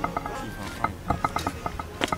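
A chair creaking as a man sits down in it: a run of short, irregular squeaks and clicks.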